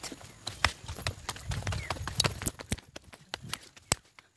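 Footsteps going down concrete steps: a run of irregular sharp taps and scuffs, with a low rumble in the middle.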